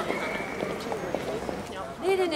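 Footsteps of several people walking, with short hard clicks at uneven intervals, under a woman's voice and other voices talking.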